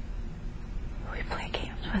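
A woman whispering, starting about a second in, over a low steady room hum.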